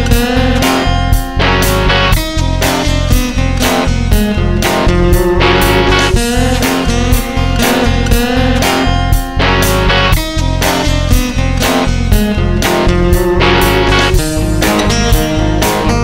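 Rock song: electric guitars over bass and drums, with a steady driving beat.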